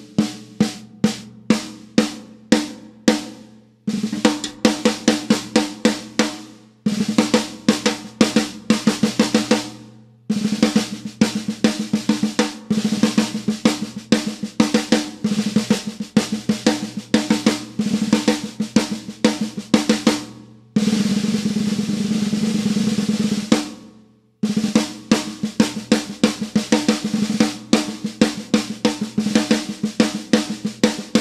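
A 13-inch, 6-inch-deep BL Drum Works custom snare drum played with sticks, snares on and the head damped with half a piece of Moongel: phrases of single strokes and fast rolls with short breaks between them. About two-thirds of the way through comes one continuous roll lasting about three seconds.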